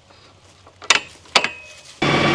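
Two sharp metallic clicks about half a second apart, from hydraulic hose quick couplers on a tractor loader's grapple being handled and uncoupled.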